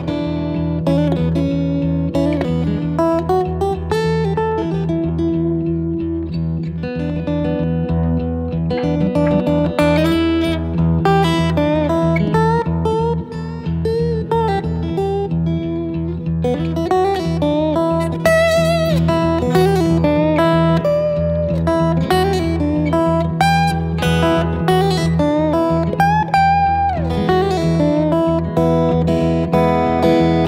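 Steel-string acoustic guitar in open E tuning, fingerpicked: a steady low bass under a plucked melody. Some of the melody notes are played with a bottleneck slide, wavering and gliding in pitch.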